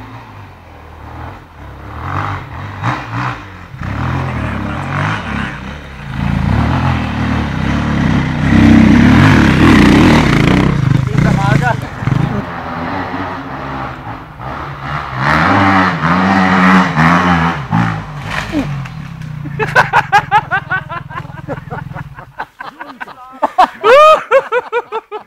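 KTM dirt bike engine revving in repeated surges as it comes through the woods, loudest about a third of the way in and again past the middle, then holding a steadier note before dropping away near the end.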